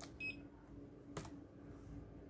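A short electronic buzzer beep from the RFID reader module as the card is read, signalling an accepted scan. A light click follows about a second later, over a faint steady hum.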